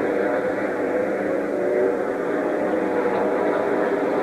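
Several NASCAR Cup stock cars' V8 engines running at speed as the field passes through a turn, their overlapping engine notes rising and falling slightly.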